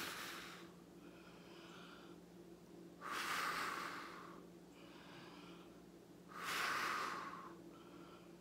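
Breath blown in long, hissing puffs across wet acrylic pour paint to push it out into cell-like blooms: one puff trailing off at the start, then two more about three seconds apart, each lasting about a second.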